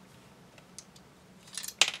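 A few faint ticks, then a quick cluster of sharp clicks near the end from plastic model-kit parts knocking together as the assembled scorpion tail is handled in the hands.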